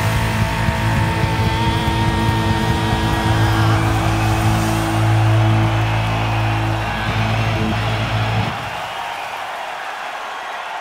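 A punk rock band's final chord held on electric guitar and bass, ringing steadily for several seconds, then cut off sharply about eight and a half seconds in, leaving the softer noise of the crowd.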